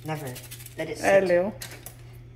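A short wordless voice sound and a few small clicks as a seasoning sachet and scissors are handled, over a steady low hum.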